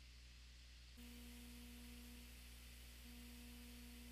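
Near silence: a faint steady electrical hum and hiss of the recording's noise floor, stepping up slightly about a second in.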